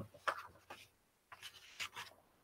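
Faint scattered clicks and rustling, a few brief small noises in an otherwise quiet pause.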